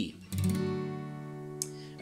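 Acoustic guitar strummed once, a single chord left to ring and slowly fade, with a light tick on the strings about a second and a half in.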